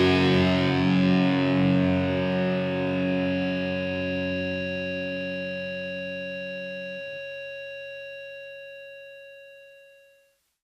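The closing chord of a rock song on distorted electric guitar, left to ring out and fade slowly. About seven seconds in the low notes cut out, and a thinner high tone dies away to silence at the very end.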